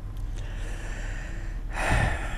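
A man's audible breathing close to a lapel microphone: a soft, drawn-out breath that ends in a louder, sharp rush of breath near the end.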